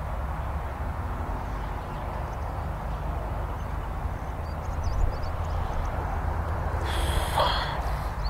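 Steady wind rumble on the microphone in an open field, with a brief noisy rustle near the end.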